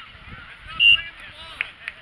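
Referee's whistle: one short, loud blast about a second in, over faint voices from the field.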